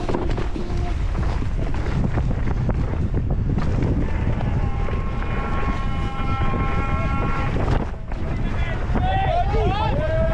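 Heavy wind buffeting the microphone throughout. A steady held tone sounds for about three seconds in the middle, and voices call out near the end.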